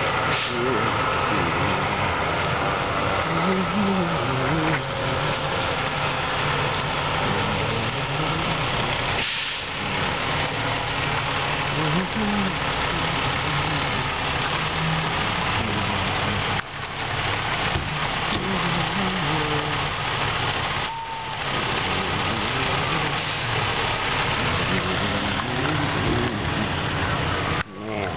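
A heavy vehicle's engine running steadily under a dense, even noise, with indistinct voices in the background.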